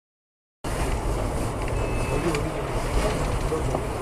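Dead silence, then about half a second in a steady low rumble of a car driving, engine and road noise, starts abruptly, with faint voices under it.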